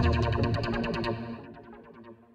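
Background music fading out, its notes repeating in an echo that dies away over about two seconds.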